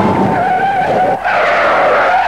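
Stock cars racing by in a pack, with a wavering, held squeal of tyres over the engines, broken briefly about midway.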